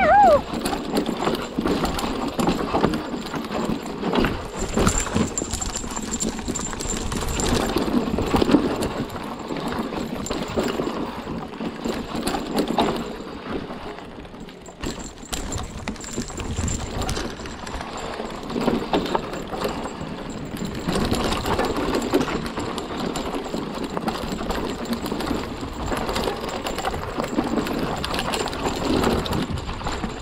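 Hardtail e-mountain bike riding down a dirt forest trail: rolling tyre noise over dirt and roots with the chain and frame rattling at every bump. A short falling squeal comes right at the start, and the clatter eases off for a moment about halfway through.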